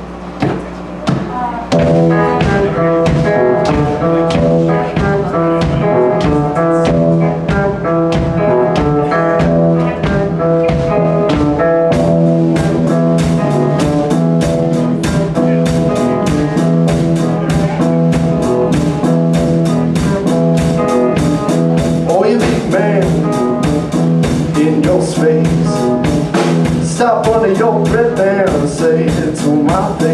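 Live blues band playing: electric guitar, bass guitar and drum kit. A few separate hits open it, the full band comes in about two seconds in and grows fuller about twelve seconds in, with bent guitar notes near the middle and towards the end.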